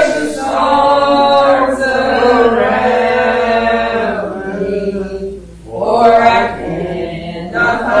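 Voices singing a hymn slowly, holding long notes, with a short breath pause about five and a half seconds in.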